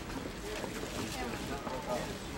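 People talking indistinctly, with a low wind rumble on the microphone.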